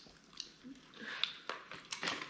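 People eating king crab legs: a few faint, short clicks and cracks of the shell being picked apart, with chewing.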